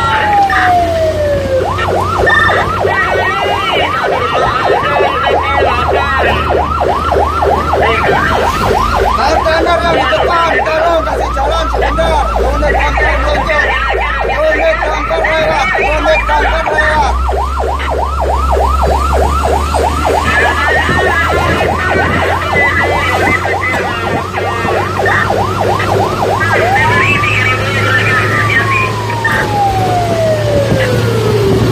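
Fire truck siren: a falling wail, then a long fast yelp, then rising and falling into a wail again near the end, over the truck's engine running.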